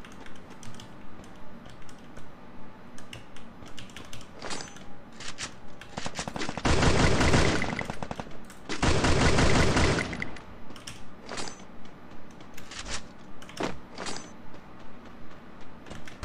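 Two bursts of rapid automatic gunfire, one about seven seconds in and a longer one about nine seconds in, over short regular pulses at about two a second.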